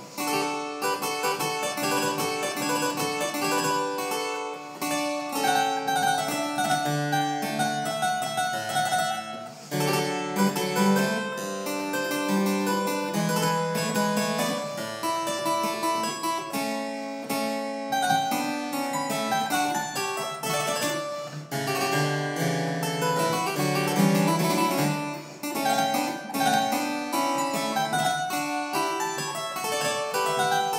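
Italian one-manual harpsichord by Lorenzo Bizzi played solo: a busy stream of quick plucked notes over a moving bass line, with a brief break in the sound near the start and again about ten seconds in.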